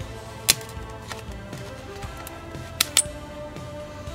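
Background music, with a few sharp clicks of a table knife tapping and scraping on a hollow plastic craft pumpkin: one about half a second in and two close together near three seconds in.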